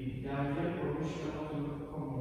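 A man's voice chanting a liturgical prayer, holding long notes on a nearly level pitch, during a Catholic Mass.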